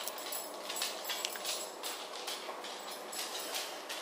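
Toothbrush scrubbing teeth: a run of short, irregular scratchy brushing strokes, two or three a second.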